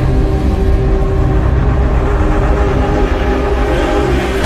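Sound design of an animated logo intro: a loud, steady deep rumble with sustained droning tones above it.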